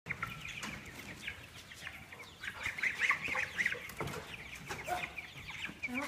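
A brood of young chicks peeping: many short, high cheeps overlapping without pause, busiest around the middle. A light knock about four seconds in.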